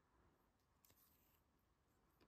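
Near silence: faint room tone, with one faint tick about a second in.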